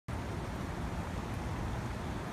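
Steady storm wind, with a low rumble of wind on the microphone.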